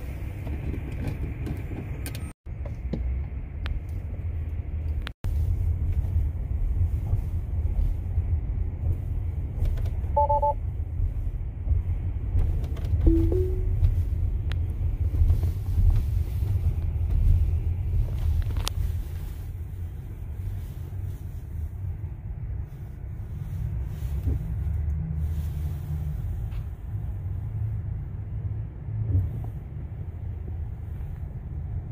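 Low, steady rumble of tyre and road noise heard inside an electric Tesla's cabin as it creeps through heavy traffic into a road tunnel. A short two-note electronic chime sounds about ten seconds in.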